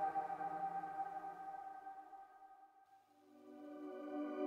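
Sustained synthesizer chord dying away to near silence about two and a half seconds in, then a new held synth pad swelling in near the end.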